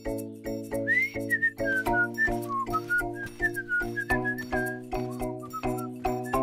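A cheerful tune whistled over bouncy children's music, which has a steady beat of about four clicks a second and held chords with a bass line; the whistling comes in about a second in.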